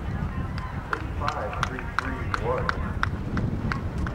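Horse's hoofbeats at the canter, a regular beat of about three sharp footfalls a second, over a steady wind rumble on the microphone.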